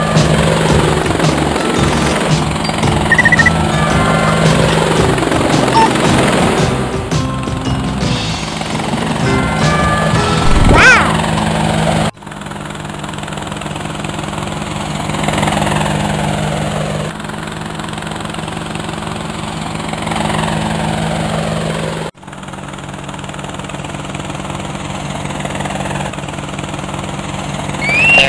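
Cartoon helicopter sound effect, a steady rotor chop, playing over background music. The sound breaks off and restarts abruptly twice, about twelve and twenty-two seconds in.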